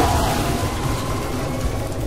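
A steady low rumbling noise that starts abruptly, an effect laid over the animated end titles.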